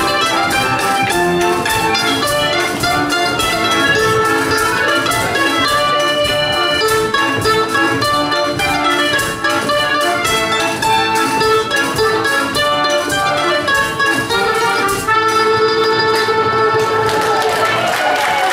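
A live contra dance band of mandolin, accordion and guitar playing a dance tune, with a lagerphone keeping a steady beat.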